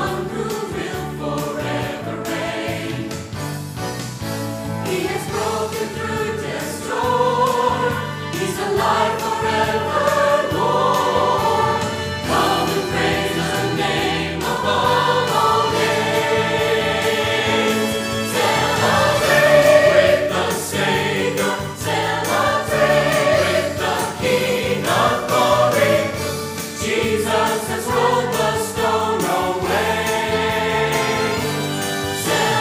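A church choir of mixed men's and women's voices singing together, growing a little louder from about seven seconds in.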